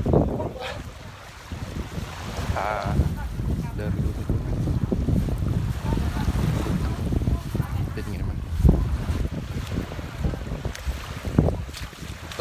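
Wind buffeting a phone microphone in a steady low rumble, over small waves washing onto a sandy shore. A sharp thump comes about two-thirds of the way through.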